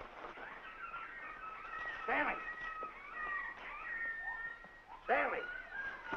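A man's drawn-out shout twice, about two seconds in and again near the end, over thin whistling bird calls of jungle ambience.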